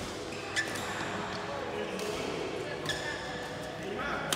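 Badminton rackets striking a shuttlecock in a rally: three sharp string pings about a second apart, over a murmur of voices.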